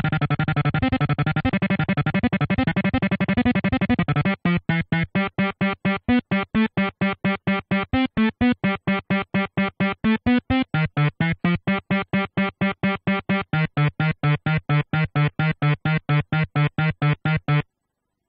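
A software synthesizer in Ableton Live, played from a timeFrog MIDI sequencer. A dense run of fast overlapping notes gives way, about four seconds in, to a steady arpeggio of short separate notes at about four a second: the preview of the arpeggio programmed on a sequencer slot. The notes sit mostly on one low pitch with occasional steps up, and stop shortly before the end.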